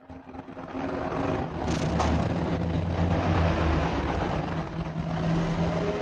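Steady engine-like mechanical noise with a low hum, building up over the first second and then holding steady.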